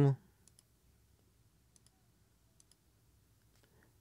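Near silence in a small room, broken by a few faint, sharp computer-mouse clicks, several of them in quick press-and-release pairs.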